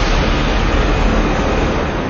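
Wind buffeting the microphone: a loud, steady rushing noise, heaviest in the low end, that eases a little near the end.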